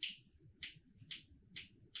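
Crisp, high-pitched clicks from the controls of a Canon EOS R6 Mark II body being worked by hand, five in a row about half a second apart.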